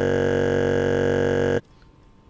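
A loud, steady electronic buzzing tone with many overtones at one fixed pitch, cutting off abruptly about one and a half seconds in.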